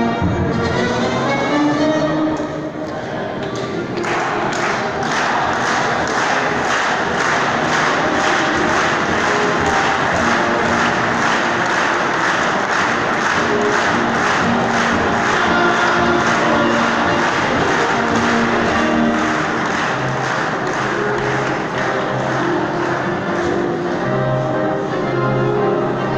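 National anthem played over a sports hall's public-address loudspeakers, echoing in the hall. About four seconds in the music becomes fuller, with a steady march beat.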